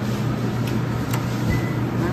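Steady low mechanical hum with one sharp click a little past a second in, as the Pitco gas fryer's electronic-ignition controls switch on. The fryer keeps kicking on and off and is not getting hot enough.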